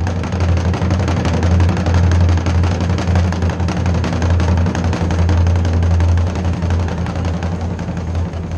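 Ensemble of Japanese taiko drums played together, a dense, fast run of heavy strokes with a deep boom.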